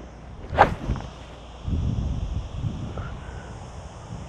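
Golf iron swung down and striking a teed golf ball about half a second in, a single sharp crack, followed by a low rustle.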